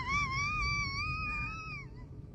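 One long, high-pitched wailing squeal from a person's voice, wavering slightly, that drops in pitch and dies away near the end.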